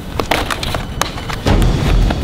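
Knocks and scuffs of a person climbing up stacks of corrugated cardboard sheets, several sharp knocks in the first second and a half, followed by a louder low rumble near the end.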